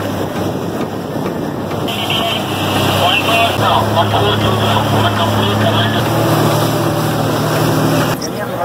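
Motorboat engine running at speed. A steady engine drone shifts pitch a few times under loud rushing water and wind.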